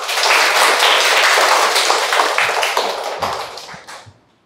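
A class of schoolchildren applauding, many hands clapping together. The clapping fades over the last second or so and stops just before the end.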